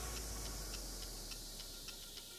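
Pressure washer spray hissing over a low hum, fading out. Faint background music with a light ticking beat comes in underneath.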